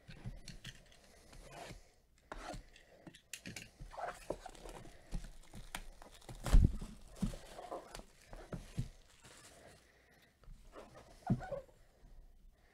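Plastic shrink wrap being torn and crinkled off a cardboard box by gloved hands, in irregular crackling rustles, with a low thump of the box being handled about halfway through.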